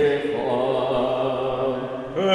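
A man's voice chanting a blessing in long, held notes, wavering slightly at first and then settling on a steady note about half a second in.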